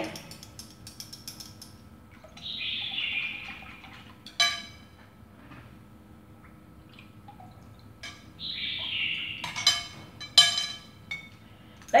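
Chopsticks scraping yogurt starter out of a small yogurt jar into a bowl of milk: two squeaky scrapes of about a second each, and a few sharp taps of the chopsticks against the jar or bowl.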